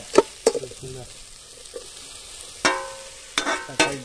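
Metal spatula stirring and scraping sliced onions frying in a steel pot over a wood fire, with a steady low sizzle and two sharp scrapes at the start. From a little before three seconds in, a few sharp, ringing strikes sound.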